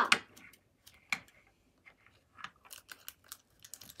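Scissors snipping and clicking as a small plastic packet is cut open: scattered sharp clicks, one louder about a second in, then a run of small quick clicks near the end.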